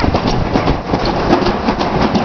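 Summer toboggan sled running down a stainless-steel trough track: a continuous rumble with dense rattling clicks from the sled in the metal channel.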